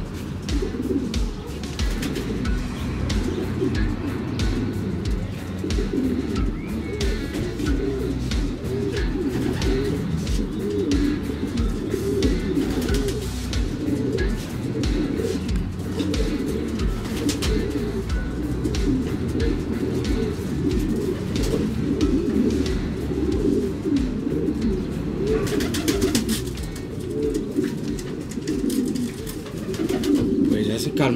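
Many domestic racing pigeons cooing together in a loft, a continuous low, wavering chorus, with scattered sharp clicks throughout.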